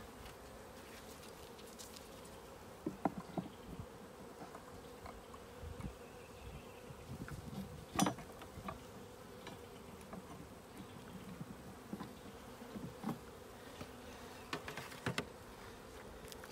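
Honeybees buzzing steadily around an opened five-frame nuc, with scattered knocks and clicks of a metal hive tool prying wooden frames loose. The sharpest knock comes about halfway through, and several more come near the end.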